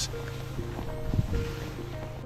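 Background music: held sustained notes over a steady bass line, with no speech.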